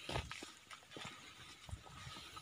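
Footsteps crunching on dry leaf litter and twigs: several irregular steps, the loudest just after the start, with a faint steady high tone underneath.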